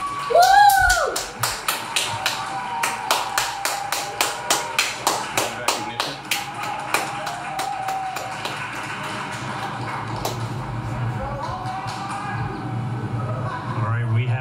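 A person laughs briefly, then a fast, even run of sharp taps follows, about four a second for roughly six seconds. Faint voices continue underneath.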